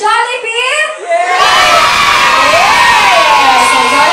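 A crowd of children cheering and shouting. After a second or so of a few voices, it breaks out loudly about a second and a half in and keeps going.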